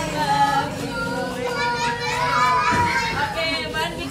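A group of young children's voices at once, high calls and chatter, with one long held high voice near the middle, as the children play a circle game.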